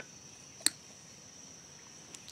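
A single sharp snip about two-thirds of a second in: a cutter clipping off the end of a bonsai training wire. A fainter click comes right at the start, over a steady high-pitched background drone.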